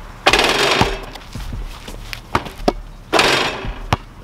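A basketball dunk on a portable hoop: two loud rattling crashes of the backboard and rim, one just after the start and one about three seconds in, with several sharp knocks of the ball bouncing on asphalt between and after them.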